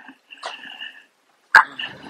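A faint, thin squeak of two steady high tones held for about a second, made as a person shifts her feet.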